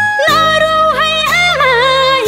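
Nepali Teej song: a sung melody with wavering, ornamented pitch comes in about a quarter second in over a steady, repeating low accompaniment.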